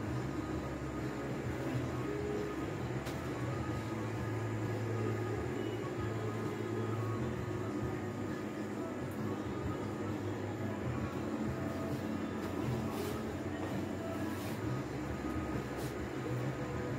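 A steady low hum, like a running motor, throughout, with a few faint rustles or ticks of clothes and a plastic bag being handled in the second half.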